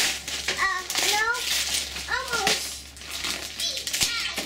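Young children's voices: a few short high-pitched calls or exclamations, with scattered clicks and rustling between them.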